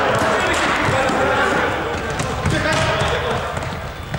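Live sound of an indoor futsal game in a large sports hall: players' voices calling out, then the thuds of the ball being kicked and bouncing on the court in the second half.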